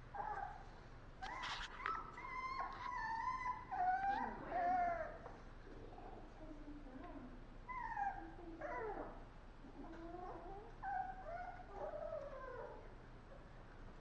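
Puppy whimpering and whining in a series of high calls that waver and slide down in pitch, with short pauses between them.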